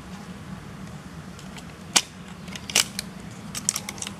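Sharp plastic clicks as an Auldey Mini 4WD's plastic body is unclipped and lifted off its chassis: one click about halfway through, another shortly after, and a quick run of small clicks near the end.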